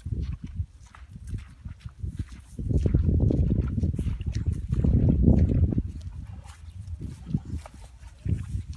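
Wind buffeting the microphone in two long gusts, with rustling steps through dry rice stubble and grass.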